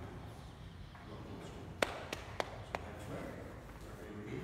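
Four quick, sharp taps in under a second, the first the loudest, over a low background murmur.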